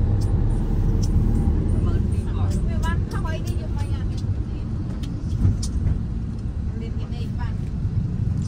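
Steady low rumble of a ride through city traffic: engine and road noise from a moving vehicle, with other vehicles passing close by.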